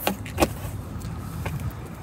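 Trunk floor cover being lowered back into place over the spare-tire well: two short knocks about half a second apart, over a low steady rumble.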